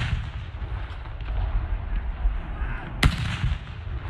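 A saluting field gun firing a blank round once, about three seconds in, the report echoing away afterwards; at the start the echo of the previous round is still dying away. A steady low rumble runs underneath.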